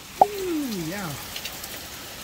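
Steady rain falling. A click about a quarter second in is followed by a short human voice sound gliding down in pitch.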